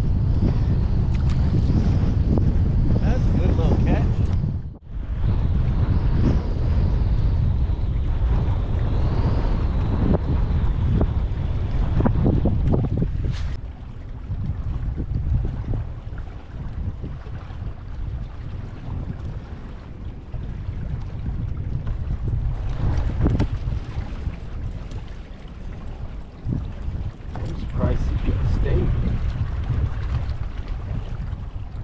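Strong wind buffeting the microphone in a low, gusting rumble. It is heaviest for the first thirteen seconds or so, then eases.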